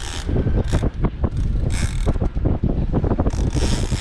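Spinning reel being cranked to fight a hooked fish, its gears giving a run of sharp mechanical clicks. Strong wind buffets the microphone throughout, with gusts of hiss coming and going over a low rumble.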